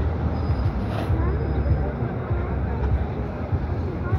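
City street traffic noise: a steady low hum of vehicle engines, with people's voices in the background.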